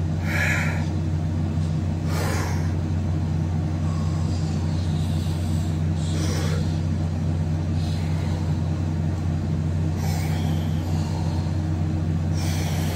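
Steady low mechanical hum, even and unchanging, with a few brief soft swishes now and then.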